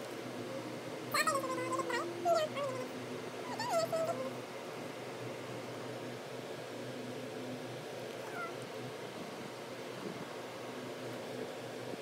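Three short, high-pitched calls, each falling in pitch, about a second apart, then a fainter one later, over a steady background hum.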